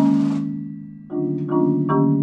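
Marimba played by several players: low rolled chords, under a high hiss that cuts off just under half a second in, fade away toward the one-second mark, then new chords are struck about two and a half times a second.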